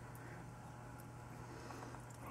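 Quiet room tone: a steady low hum with a few very faint ticks.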